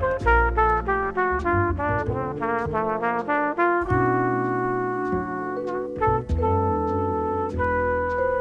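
Jazz quartet recording: a trumpet plays a run of short notes, then longer held notes, one of them wavering in pitch, over upright bass and drum cymbals.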